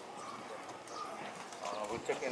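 Ballpark ambience of faint distant voices calling out, growing a little louder near the end, with a few faint clicks.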